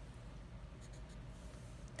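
Felt-tip marker drawn across paper, faint: a short stroke underlining a number on the sheet, then the tip moving as a numeral is written.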